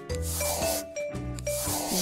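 Scratchy rubbing strokes of a cartoon paintbrush sound effect, loudest in the first second, over a light children's music backing.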